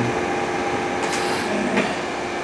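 Steady background hum and hiss of room noise, with a few faint steady tones and a brief soft hiss about a second in.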